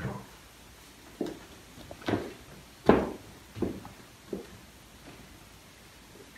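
A series of six short wooden knocks and thuds in a room, coming about one every three-quarters of a second, the loudest about three seconds in.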